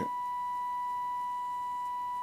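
Steady 1 kHz test tone, with faint higher overtones, from the Trio 9R-59D communication receiver's loudspeaker. It is the demodulated audio of a 455 kHz IF test signal modulated with a 1 kHz tone, heard while the IF transformer cores are being peaked during alignment.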